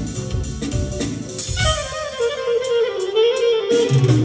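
Live band music led by a clarinet. About a second and a half in, the drums and bass drop out and the clarinet plays an ornamented, wavering solo line alone; the band comes back in shortly before the end.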